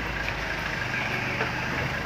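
A motor vehicle's engine idling nearby: a steady low hum with no change in pitch.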